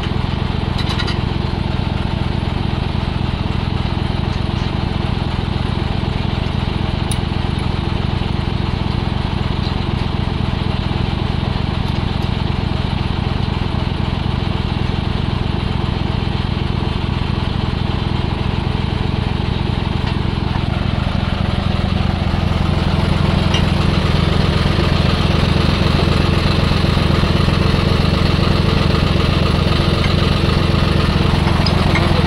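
Tractor diesel engine idling steadily, getting a little louder about twenty seconds in.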